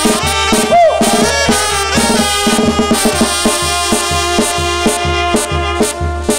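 Oaxacan brass band (banda) playing an instrumental passage: trumpets and trombones on held chords over a tuba bass and drums keeping a steady beat, with one brief bent note about a second in.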